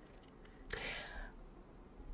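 A single soft breath from a woman, about a second in, in a pause between phrases of speech; otherwise faint room tone.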